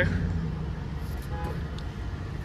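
Steady low rumble of an idling vehicle engine in the background.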